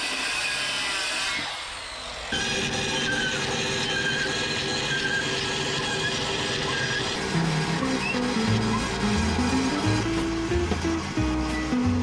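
An electric hand planer runs along a timber, then power woodworking machinery keeps running under background music, with a bass line stepping in from about seven seconds.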